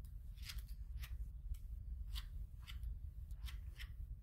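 Paper being handled: about ten short, crisp rustles at irregular intervals, over a low steady hum.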